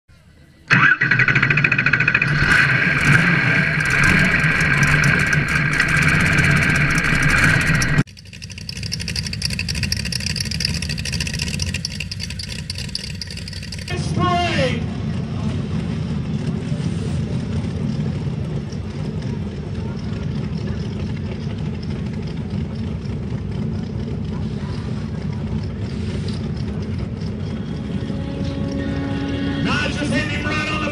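A loud, steady intro sound for about the first eight seconds, then a mud-racing rail dragster's engine running at idle with a steady low rumble. About 14 s in, the pitch sweeps up quickly and the engine gets louder, then settles back to a steady run.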